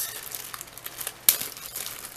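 Plastic packaging crinkling and rustling as small rolls of nail transfer foil are taken out, with one sharp click a little past halfway.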